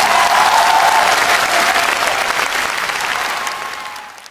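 Concert audience applauding at the end of a song, with the song's last held note dying away under the clapping in the first second. The applause fades out near the end.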